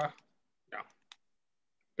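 A brief spoken 'yeah' followed by a single short click, with dead silence around them.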